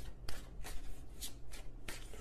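A deck of tarot cards being shuffled by hand, in several brief strokes.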